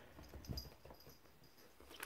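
Near silence: room tone, with one faint soft sound about half a second in.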